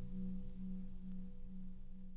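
The song's final held low note rings out from a vinyl record and slowly fades away.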